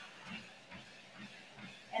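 Faint, regular footfalls on a Lifepro Swift folding treadmill's belt at a jogging pace, about three a second, over a low hiss.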